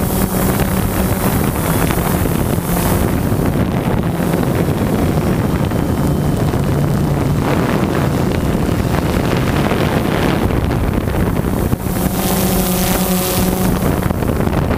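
Quadcopter drone's electric motors and propellers buzzing loudly, heard from the drone's own camera. Wind noise is on the microphone. The hum shifts in pitch as the motors change speed, with a higher whine near the end.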